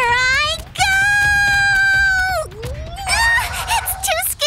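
A cartoon character's scream of fright. It rises, holds one long note for about a second and a half, then breaks off with a dip in pitch, followed by short shaky cries.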